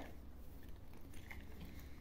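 Quiet room tone with a steady low hum and faint small handling noises from hands fiddling with a knitting yarn holder and its strap.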